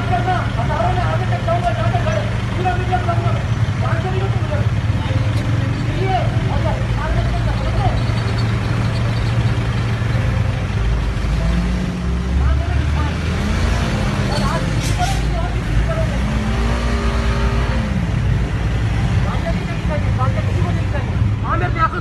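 Idling traffic heard from inside a car: a steady low engine hum with people talking indistinctly. Around the middle, a low tone rises and falls three times.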